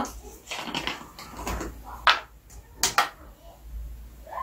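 A white plastic bottle being handled and its cap unscrewed, with two sharp plastic clicks a little over two seconds in, under a second apart, and lighter rustling and handling noise around them.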